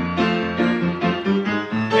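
Piano played with both hands, chords with a moving bass line in a steady song accompaniment, with no voice over it.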